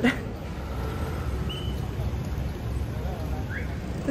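City street ambience: a steady low rumble of traffic with faint distant voices, a brief high beep about a second and a half in, and a short rising chirp near the end.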